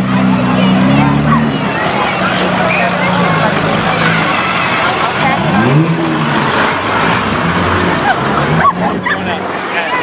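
A medium-duty parade truck's engine running low and steady as it slowly passes, strongest in the first second and a half. A crowd of spectators chatters throughout.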